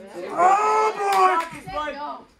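A long, drawn-out voice-like call, held and falling slightly in pitch, followed by shorter, broken calls after about a second and a half.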